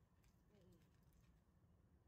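Near silence, with a few faint ticks and a brief faint falling tone in the first second.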